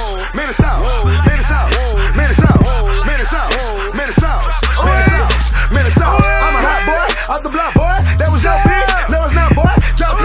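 Hip hop track: rapped vocals over a beat with heavy bass.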